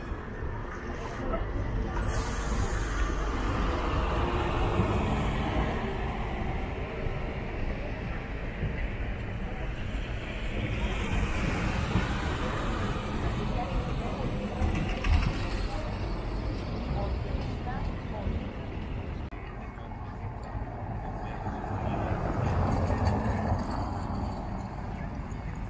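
Tour coaches' diesel engines running as they pass close by, a steady low rumble that swells and fades, over street noise and crowd chatter. A brief high hiss about two seconds in.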